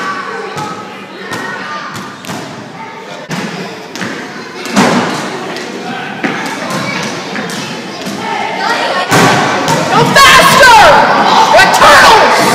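Thuds and knocks echoing around a school gym, with children's voices. High squeaks that slide up and down come in about nine seconds in and grow louder.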